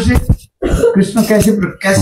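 A man clears his throat briefly near the start, then goes back to speaking.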